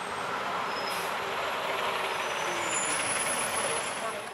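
Van Hool motor coach pulling up and stopping, with a long hiss of compressed air from its brakes that swells and then dies away at the end.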